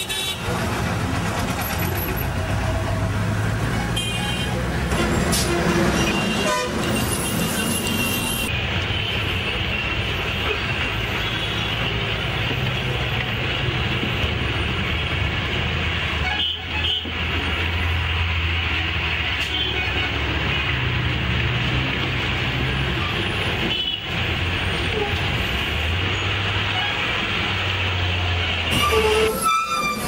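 City bus engine running as it drives through busy street traffic, heard from inside the bus. Vehicle horns toot several times in the first eight seconds or so.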